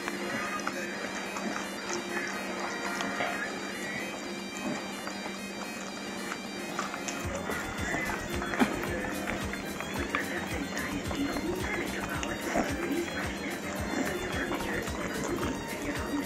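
Celtic bagpipe music over a steady drone; a fuller, lower accompaniment joins about seven seconds in.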